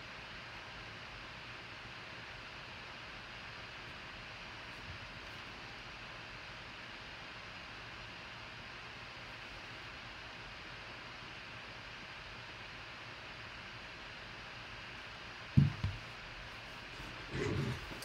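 Steady room hiss with a faint electrical hum. A single short, low thump near the end is the loudest sound, and a man's voice starts just before the end.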